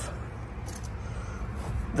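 Quiet handling sounds, with faint soft rustles about a second apart, as a metal surface-cleaner spray bar is pulled out of a vehicle door pocket packed with cloth gloves and rags, over a low steady rumble.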